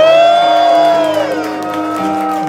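Live band playing held chords under one long high voice that swoops up, holds for about a second, then slides down and fades.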